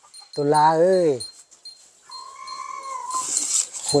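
A high, drawn-out animal call of about a second that dips at its end, followed by a short hissing rustle.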